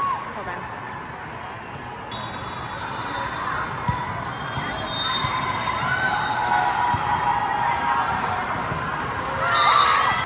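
A volleyball rally: sharp smacks of the ball being struck, over the din of a large, busy hall. Spectators' voices grow through the rally and break into a loud shout of cheering near the end as the point is won.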